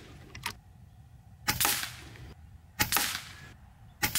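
FX Impact M4 .22 PCP air rifle, fitted with its LDC moderator, firing two shots about a second and a half apart, each a sharp crack with a short fading tail. A lighter click comes about half a second in. It is shooting 15-grain pellets at about 950 feet per second on its hot factory setting.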